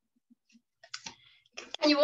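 A few short computer clicks as a PowerPoint slideshow is started, after a near-silent start; a woman begins speaking near the end.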